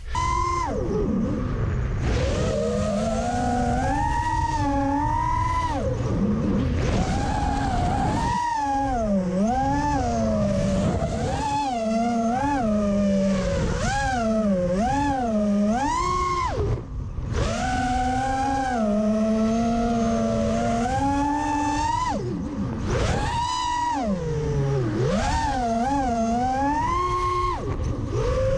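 Vortex 250 racing quadcopter's brushless motors and Dalprop Cyclone T5045C props whining in flight. The pitch swoops up and down every second or two as the throttle is worked.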